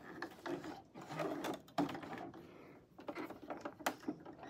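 Hands working at a Janome coverstitch machine after the seam: irregular small clicks and rustling as the fabric and threads are pulled out from under the presser foot, with no steady stitching.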